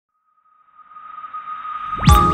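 Intro sound effect: a steady high tone under a whooshing swell that fades in and grows louder through the second half, rising into the opening jingle.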